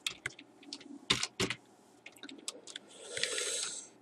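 Scattered keystrokes on a computer keyboard: a dozen or so separate taps with pauses between them. A soft breathy hiss comes near the end.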